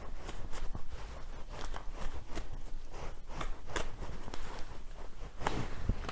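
A deck of playing cards being shuffled by hand: a run of light, irregular clicks and flicks as the cards slide and snap against each other.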